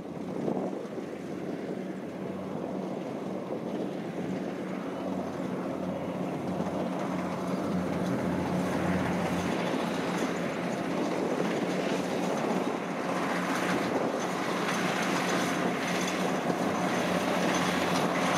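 Kubota DC60 combine harvester's diesel engine running under load while it cuts and threshes rice: a steady mechanical drone that grows gradually louder as the machine comes closer.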